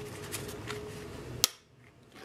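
Faint handling noise from a trimmed Kydex holster shell, with a few light clicks and one sharp click about one and a half seconds in.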